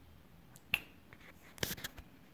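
A few soft clicks in an otherwise quiet pause: a single sharp one a little before the middle, then a quick run of several close together near the end.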